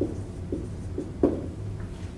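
Dry-erase marker writing on a whiteboard: three or four short strokes, the last the loudest, over a steady low room hum.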